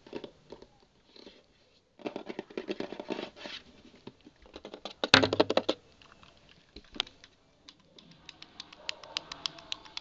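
Close-up ASMR clicks and taps right at the microphone: a dense cluster of quick clicks, then one loud knock with a dull thud about five seconds in, and an even run of clicks, several a second, near the end.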